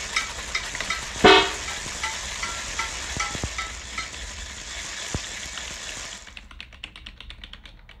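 Experimental electronic music in a DJ mix: a crackling, hissing texture over a ticking pattern of short pitched blips, about three a second, with one loud ringing tonal hit about a second in. About two-thirds of the way through the hiss stops suddenly, leaving fast dry ticks that fade away.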